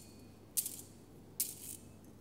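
Brass thurible being swung on its chains, jangling twice, about half a second and a second and a half in, each time with a brief metallic ring.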